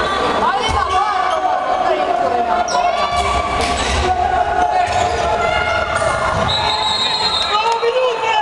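Handball bouncing on a wooden sports-hall floor as players dribble, among shouting voices and crowd noise echoing in a large hall. A high, steady whistle tone starts near the end.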